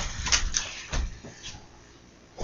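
A few soft knocks and thumps as a child sits down on the floor among boxed presents, getting fainter and dying away after about a second.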